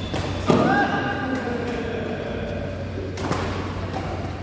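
Badminton play in a hall: a loud thud about half a second in, followed at once by a drawn-out cry lasting about two seconds, then more sharp hits a little after three seconds in.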